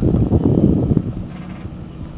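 Pickup truck towing a floatplane trailer driving past at low speed: a low rumble of engine and tyres, mixed with wind buffeting the microphone, loudest for about the first second and then fading.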